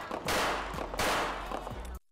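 Two pistol shots about three-quarters of a second apart, each sharp crack followed by a ringing, fading echo.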